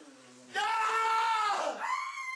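A high-pitched scream held for about a second, starting about half a second in, with another cry beginning near the end.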